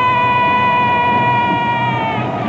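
A girl's long, high-pitched scream held on one steady pitch, over a low rumbling rush.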